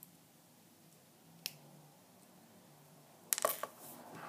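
A single sharp click about one and a half seconds in, then a quick cluster of louder clicks and knocks near the end, over a faint low hum.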